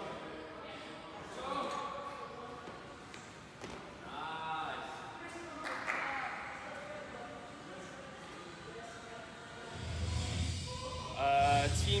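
Voices echoing in a gym hall, with a few faint thuds of barbells and jumping athletes landing on rubber flooring. Near the end a music track with a low beat comes in, followed by closer speech.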